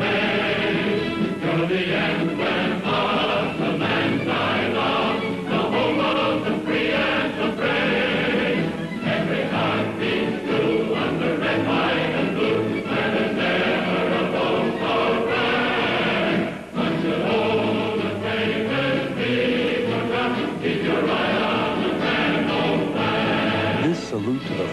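Choir singing over instrumental accompaniment, with a brief dip about two-thirds of the way through.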